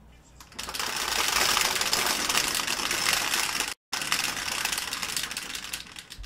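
Two dice rattling and tumbling inside a clear plastic dome dice roller: a rapid, continuous clatter that starts about half a second in, cuts out for a split second about four seconds in, and dies away near the end as the dice settle on a six and a six.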